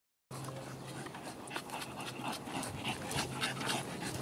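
Bulldog puppy panting in the heat, quick short breaths about three a second.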